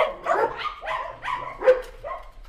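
Dogs barking, a quick run of about six short barks, roughly three a second.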